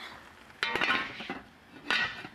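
Lid of a Dutch oven clanking down onto the pot about half a second in, ringing briefly as it settles, with a second short knock near the end.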